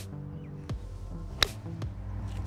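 Background music, with one sharp click about one and a half seconds in: a 58-degree wedge striking a golf ball, played ball-first as a pitch shot from a bunker.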